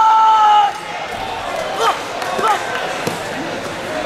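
A young martial artist's drawn-out kiai shout, one steady held cry that falls off and ends under a second in. It is followed by a couple of short sharp cries or squeaks and a single thump on the mat, and a second long shout begins right at the end.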